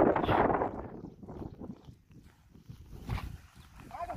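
Scuffs and knocks of a person scrambling up rocky ground on hands and feet, loudest in the first second, with a sharper knock about three seconds in.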